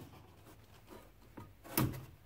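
Hand tools working the jam nut of a tractor's hydraulic pressure relief valve: mostly quiet, with one short metallic knock of the wrench near the end.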